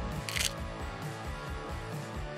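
A single camera shutter click about half a second in, over background rock music.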